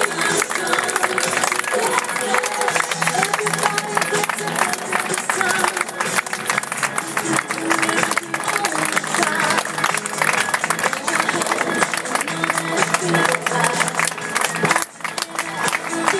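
Spectators clapping continuously with scattered hand claps, over music in the background; the clapping briefly drops away shortly before the end.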